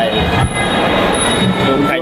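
Loud, steady background din with several steady high-pitched tones running through it, under faint voices.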